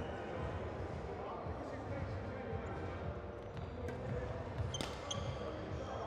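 Badminton hall ambience: indistinct background voices with a few sharp taps and brief high squeaks around the fourth and fifth seconds.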